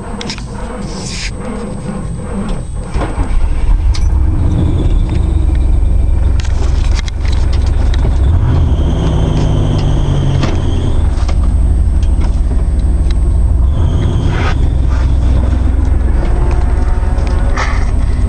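GMC pickup truck's engine and drivetrain running while driving on a dirt trail, heard from inside the cab as a heavy low rumble that gets louder about four seconds in, with a few knocks and rattles early on.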